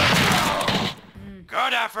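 A loud, dense, crackling burst of anime fight sound effects, a blast or volley of hits, lasting about a second. A cartoon character's voice follows it.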